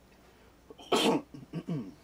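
A man coughing: one sharp, loud cough about a second in, followed by two shorter, voiced coughs.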